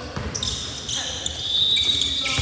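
Basketball bouncing on a gym's hardwood court with shoe squeaks in a large, echoing hall. A high squeal is held for over a second from about half a second in.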